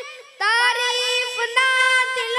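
A child singing an Urdu devotional kalam solo, with no instruments. The voice drops out briefly at the start for a breath, then comes back on long, ornamented held notes.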